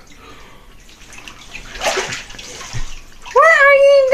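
Water sloshing in a bathtub full of ice water as a person lies back and sinks under the surface. Near the end, a loud, long, high-pitched vocal cry held on one pitch starts up.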